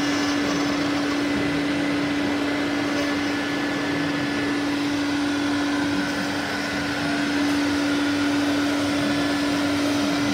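CNC router spindle cutting lettering into a painted wooden board: a steady single-pitched hum over the rush of the dust-collection vacuum pulling chips up through the brush shoe and hose.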